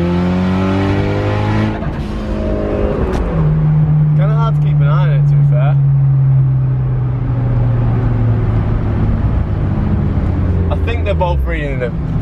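Turbocharged four-cylinder engine of a Mitsubishi Lancer Evolution, heard from inside the cabin under a hard pull in third gear. Its pitch climbs for the first couple of seconds, then breaks off as the throttle comes off. After that the engine note holds steady and slowly sinks, dropping away near the end.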